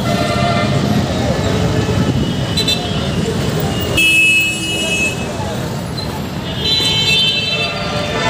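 Busy street traffic running steadily, with vehicle horns honking several times; the longest and loudest honk comes about four seconds in.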